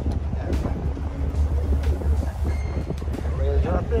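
Steady low drone of the fishing boat's engine, mixed with wind on the microphone, with people's voices talking in the background near the end.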